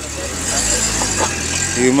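A car driving past close by, its engine and tyre noise swelling steadily.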